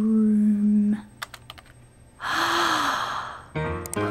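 A held low electronic tone, then a few light computer-keyboard clicks. About two seconds in comes a woman's sharp gasp of shock, and music begins near the end.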